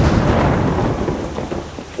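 Rolling thunder over a steady rain-like hiss, the low rumble strongest at the start and fading away toward the end.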